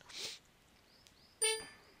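A single short ding, a pitched tone that starts sharply about a second and a half in and fades within half a second, after a soft breathy hiss.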